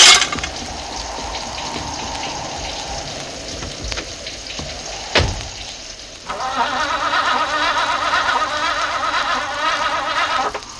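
Recorded sound effects of steady rain falling, opening with a sharp burst and broken by a single heavy thud about five seconds in. For the last four seconds a sustained, wavering sound made of several tones rises over the rain.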